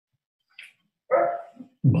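A dog barks once, briefly, a little after a second in.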